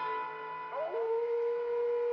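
A werewolf howling on an old film soundtrack: one long drawn-out call that rises in pitch just before the one-second mark and then holds steady.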